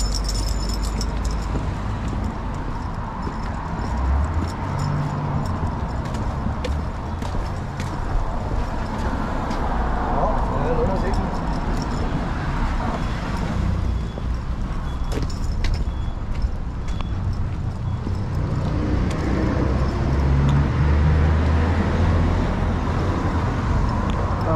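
Street sounds during a walk: a car drives past, over a steady low rumble and scattered small clicks.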